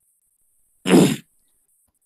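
A person clears their throat once, a short burst about a second in.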